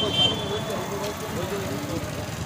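Voices of a small group of people talking over one another, with a steady background noise.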